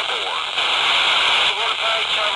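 Baofeng BF-F8+ handheld radio's speaker hissing with FM static while receiving the weak SO-50 amateur satellite downlink. Faint, garbled voices of ham operators break through the hiss at the start and again near the end, with a louder stretch of plain hiss in between.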